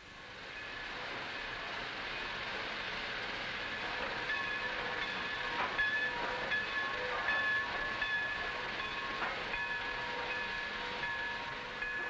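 Railway train at a station platform: a rush of noise builds over the first second or so, then from about four seconds in come high, steady squealing tones that start and stop, with a few clanks.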